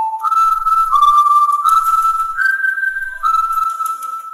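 A short whistled tune: one clear tone stepping up and down through a handful of held notes, then fading out.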